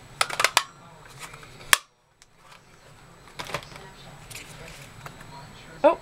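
A handheld lever-type paper circle punch clicking as it is pressed through paper, with light paper handling: a quick cluster of clicks about half a second in, a single sharp click just before two seconds, and a few softer taps later.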